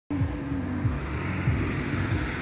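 A car's steady low engine and road hum as it drives slowly past.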